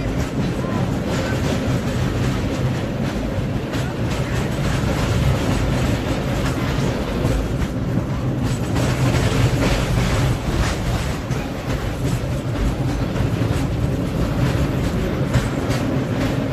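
Cable car running on its rails: a steady low rumble with continual rattling and clattering, and people's voices in the background.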